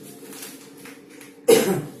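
A man coughs once, loud and sudden, about one and a half seconds in.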